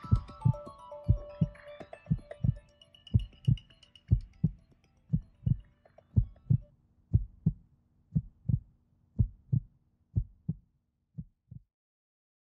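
Heartbeat sound in a soundtrack: a low double thump, lub-dub, about once a second, under soft music that fades out in the first few seconds. The heartbeat grows fainter and stops shortly before the end.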